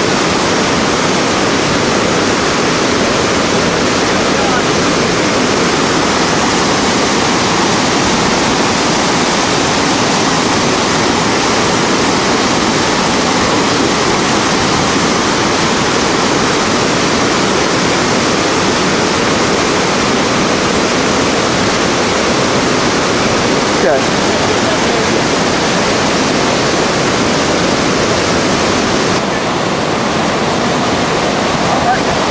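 Whitewater rapid pouring over rock ledges: a steady, loud rush of water noise without let-up.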